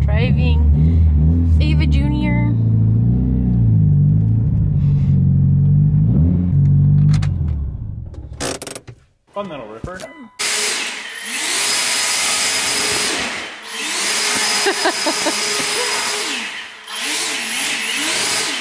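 Mitsubishi Lancer Evolution VIII's turbocharged four-cylinder engine, heard from inside the cabin, pulling up and down through the revs for about seven seconds before dying away. A couple of seconds later a loud, steady rushing hiss sets in, with voices and a laugh over it.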